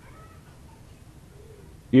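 A pause in a man's preaching: faint room tone, then his voice resumes just before the end.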